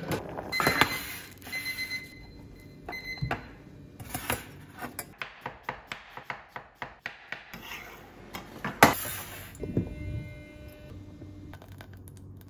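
Chef's knife chopping an onion on a wooden board, a quick even run of cuts a few seconds in, among other kitchen clatter and knocks. In the first few seconds a high electronic beep sounds several times.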